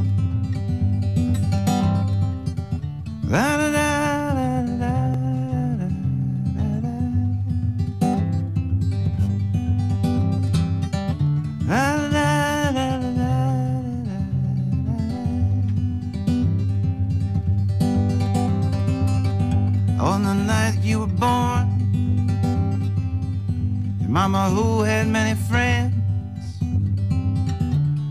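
Acoustic guitar playing steadily, with a man's voice singing wordless phrases over it, four times in the passage, each rising and then bending down in pitch.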